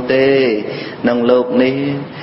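A man chanting Khmer Buddhist dharma verse in a slow, melodic recitation, drawing out and bending each note.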